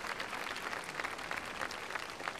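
A crowd of guests applauding: steady hand clapping with no break.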